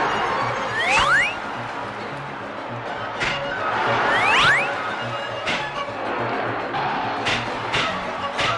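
Cartoon soundtrack music with a pulsing rhythm, broken by several sharp whacks and two quick rising squeals, about a second in and again about four seconds in.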